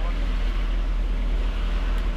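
Steady low rumble and wind rush on the microphone from a vehicle riding along at speed, with no change through the stretch.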